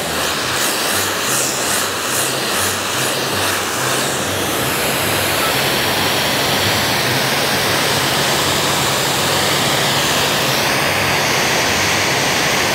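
A 3 kW electric high-pressure washer blasting a 15-degree jet of water: a loud, steady hiss over a low hum from the machine. About four seconds in, the hiss turns brighter as the jet swings off the pavement and out into open air.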